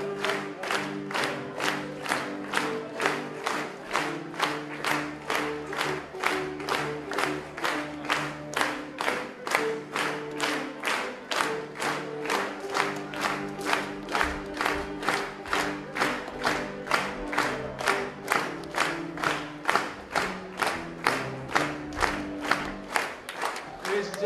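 Audience clapping together in a steady beat, about two claps a second, along with music of held notes that move slowly from pitch to pitch.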